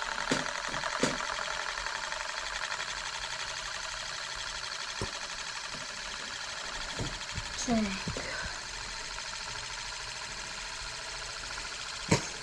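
Euler disk, a heavy metal disc, rolling and spinning on its curved mirrored base: a steady whirring rattle that slowly fades, with a few faint knocks.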